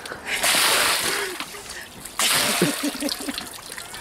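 A bucket of water thrown over a person and splashing onto him, followed by a second, shorter splash about two seconds in.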